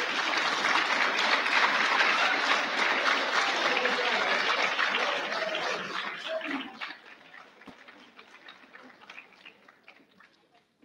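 Audience applauding, the clapping fading about six seconds in and dying away with a few scattered last claps.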